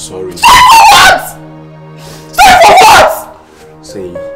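A woman cries out twice in anguish: two loud, wailing cries about a second long each, the first half a second in and the second just past the middle. Steady background music plays under them.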